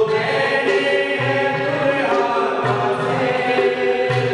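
Congregation singing a hymn with instrumental accompaniment: long held sung notes over a low beat that comes about every second and a half.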